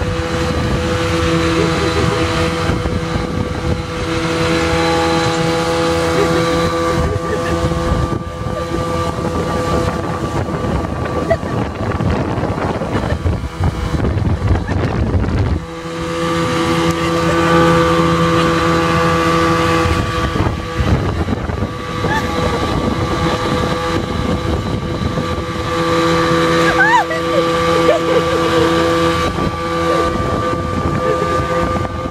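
Outboard motor of a boat running steadily at towing speed, with wind buffeting the microphone and water rushing in the wake. The steady engine note fades under the wind for several seconds around the middle, then comes back strongly after about sixteen seconds.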